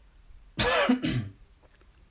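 A person coughs once, a short throaty burst about half a second in that lasts under a second.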